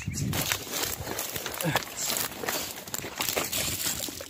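Running footsteps through dry grass and undergrowth: an irregular rustling and crunching, with scattered heavier footfalls and the rub of the phone being carried at a run.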